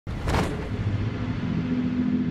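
Cinematic intro sound effect: a low rumbling drone that starts abruptly, with a brief whoosh a moment in, under the animated intro.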